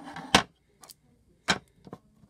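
Two sharp wooden knocks, about a second apart, as a small wooden box frame is handled and set against a wooden tabletop, with fainter clicks between and after.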